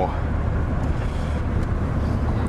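Steady low drone of a moving car heard from inside the cabin: engine and road noise.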